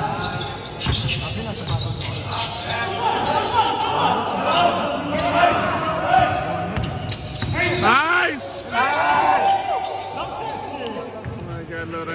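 Basketball dribbling and bouncing on a hardwood gym floor during a scrimmage, with repeated thuds, sneakers squeaking sharply around two-thirds of the way through, and players calling out in a large hall.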